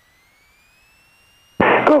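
Aircraft radio and intercom audio: near silence with a faint thin tone gliding slowly upward. Then, about one and a half seconds in, a VHF air-traffic radio call cuts in abruptly and loudly, its voice narrow and tinny.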